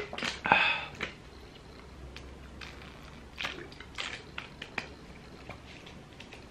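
Scattered clicks and crackles of a plastic water bottle being handled and set down after a drink, with a short rush of noise about half a second in.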